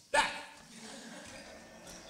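A man's loud shouted "back!" just after the start, falling sharply in pitch, then a faint steady background.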